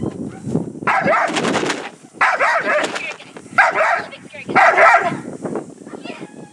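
A protection-trained dog barking in four loud bursts, each about half a second to a second long.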